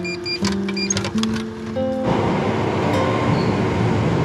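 Background music with held notes; about halfway through, the loud rushing noise of an electric commuter train moving along the station platform comes in under the music.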